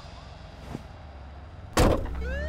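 A faint low rumble, then a single short, sharp bang near the end.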